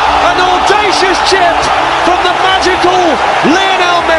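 Edited soundtrack of a voice with rising-and-falling glides over a pulsing bass beat.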